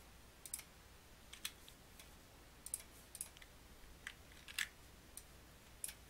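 Faint computer mouse and keyboard clicks, about a dozen sharp clicks in irregular pairs and clusters over a low steady hum.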